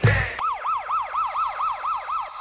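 A siren-like sound effect within a music track: one last heavy beat, then a wailing tone that rises and falls about four times a second.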